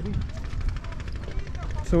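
Wind buffeting the microphone of a hand-held camera being walked outdoors: a low, uneven rumble.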